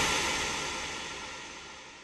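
Long reverberation tail of a single hand clap, fading slowly and evenly. It comes from a digital room reverb with its decay set to about 5 seconds, imitating a large church or auditorium.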